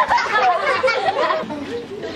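Only speech: people talking, with the voices running on together.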